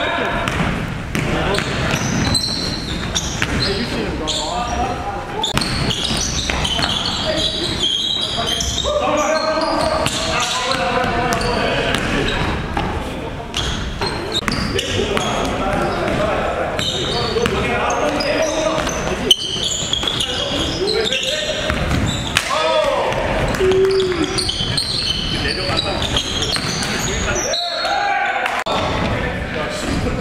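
A basketball being dribbled on a hardwood gym floor, with players' voices calling out in the big hall.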